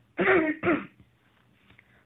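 A person clearing their throat: two short raspy bursts in the first second, the second one shorter.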